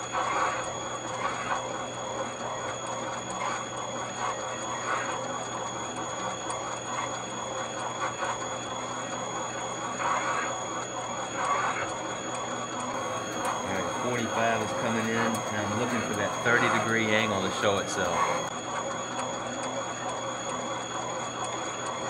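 Valve seat cutting machine with a single-blade radius cutter cutting a hard exhaust valve seat in a cylinder head: a steady machine whine with the scraping of the blade in the seat, the cutter fed down slowly to let it cut.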